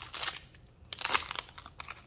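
A foil trading-card pack wrapper crinkling as it is torn and peeled open by hand, in two short bursts: one at the start and another about a second in.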